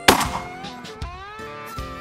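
A single loud shotgun shot just after the start, cracking out and dying away over about half a second, over background guitar music with a steady beat.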